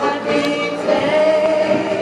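A choir of several voices singing together in long held notes.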